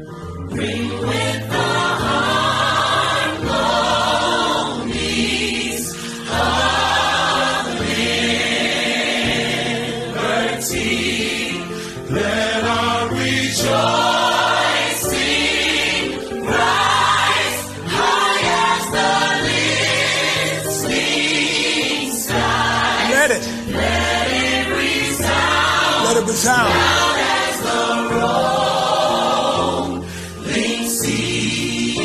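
Gospel choir singing over an instrumental backing with a low bass, in sung phrases a second or two long.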